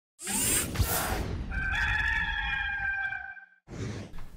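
A whoosh, then a rooster crowing once in one long call starting about a second and a half in.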